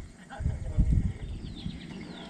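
Low rumbling thumps in the first second, then a few short, high, falling bird chirps.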